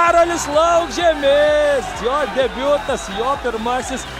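Only speech: a man's continuous match commentary over the broadcast.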